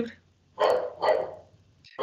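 A dog barking twice in quick succession.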